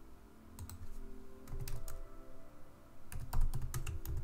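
Typing on a computer keyboard: a couple of keystrokes about half a second in, then a quick run of keystrokes near the end as words are typed into a text box.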